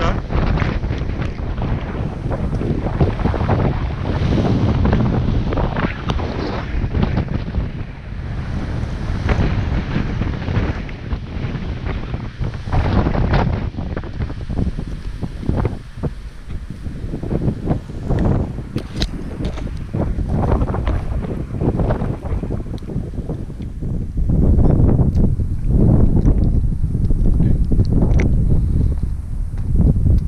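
Wind buffeting the camera microphone in gusts: a loud, low rumble that surges and falls off every second or two, swelling stronger near the end.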